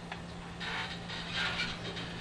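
Two short, scratchy strokes of a flat watercolor brush laying dark pigment, about a second apart, over a steady low hum.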